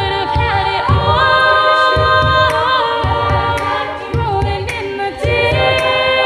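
Young women's a cappella ensemble singing in close harmony behind a lead voice, held chords sliding between notes, over a steady beat of low thumps and short ticks from vocal percussion.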